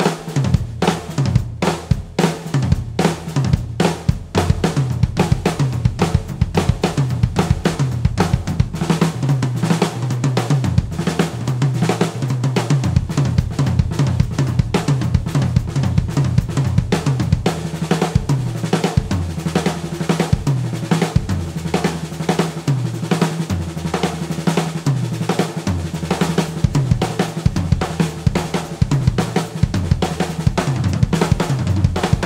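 Sakae Trilogy drum kit played without a break: fast fills run one after another across the brass snare, toms and kick drum, with cymbals and the hi-hat kept going underneath. The low drum pitches step up and down as the fills move around the toms.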